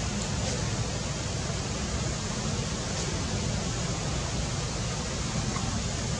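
Steady outdoor background noise: an even hiss with a low rumble underneath and a few faint ticks, with no monkey calls.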